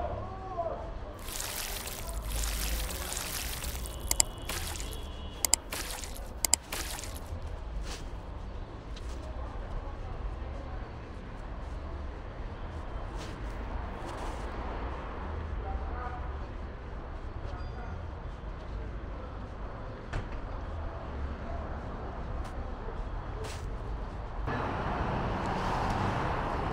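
City street ambience: a steady low traffic rumble, with a burst of hissing a couple of seconds in and a few sharp clicks soon after. A vehicle passes close near the end.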